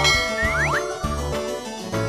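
Upbeat children's background music with a steady beat, and a quick rising cartoon 'boing' sound effect about half a second in.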